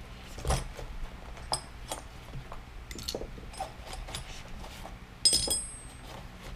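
Small metal and plastic GoPro mount parts clinking and clicking as they are taken out of a soft case and set down on a mat, with a louder ringing metallic clink about five seconds in.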